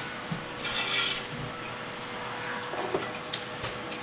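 A fork whisking eggs in a bowl: a scraping rub, strongest about a second in, with a few light taps.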